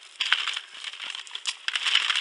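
Dried corn kernels being rubbed off the cob by hand, giving quick irregular crackles and clicks as they break loose and drop onto paper.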